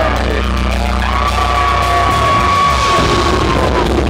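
Death metal band playing live: heavily distorted electric guitar and drums, with one high note held for about three seconds in the middle.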